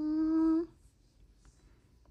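A woman humming one long, steady 'hmm' at a single pitch, which stops abruptly well under a second in; after it, near-quiet room tone.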